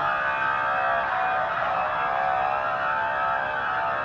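A police car siren wailing, its pitch sweeping up and down.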